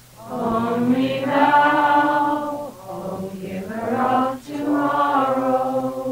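Devotional chanting: voices singing long, held phrases, about three in a row with short breaks between them.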